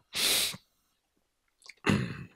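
A short, loud rush of breath into a close handheld microphone, about half a second long, at the very start. Near the end a few faint clicks and the start of a voice follow.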